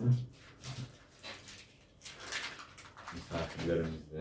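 Crinkling rustle as sheets of dried apple leather are peeled off the lining of a baking tray and handled, with a short hum at the start and a brief spoken syllable near the end.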